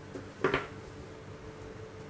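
A short, sharp double clack of a small hard object knocking on the table about half a second in, over a faint steady hum.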